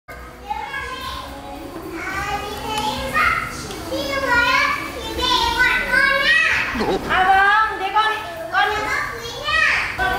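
Speech only: a woman and a young child talking in Vietnamese.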